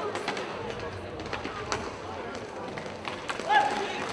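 Inline hockey play in an echoing arena: scattered sharp clicks and knocks of sticks, puck and skates on the rink floor, under players' voices, with one louder shouted call near the end.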